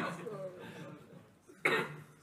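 A single short cough, sharp and loud, about one and a half seconds in.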